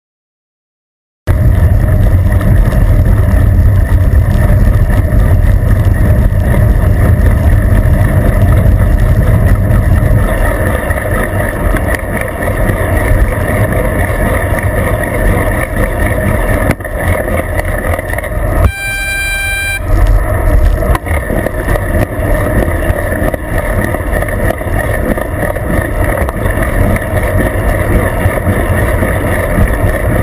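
Heavy wind and road rumble on a bicycle-mounted GoPro Hero2 riding at speed in traffic, starting abruptly about a second in. About two-thirds of the way through, a horn sounds once for about a second.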